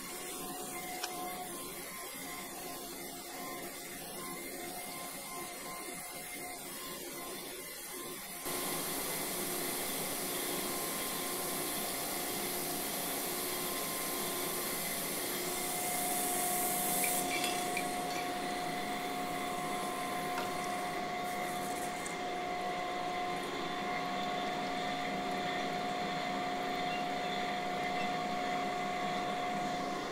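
Cam grinder finish-grinding a steel main bearing journal on a Viper V10 camshaft, with coolant pouring onto the wheel: a steady hiss and hum. It steps up in level about eight seconds in, and a steady whine joins about halfway through.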